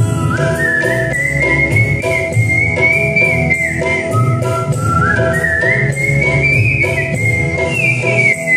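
A man whistling a melody into a microphone, one clear high tone sliding from note to note, over live band accompaniment with bass and a steady beat.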